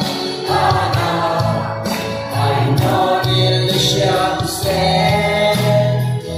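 A group of men singing a Mao Naga song together in unison, with hand claps keeping time.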